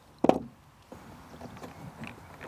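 Wooden dresser drawer being handled: one sharp knock about a quarter second in, then lighter knocks and rubbing.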